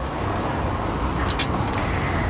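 Steady noise of road traffic in a city street, with a brief click about halfway through.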